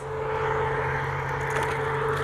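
A steady, unchanging droning hum with a fixed low pitch and higher tones above it, like a running engine.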